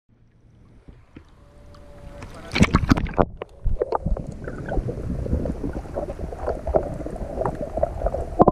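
Action camera moving from the water surface to underwater. Water lapping builds up, then a burst of splashing comes about two and a half seconds in as the camera dips under. After that comes muffled underwater sound, with crackling bubbles and a low rumble.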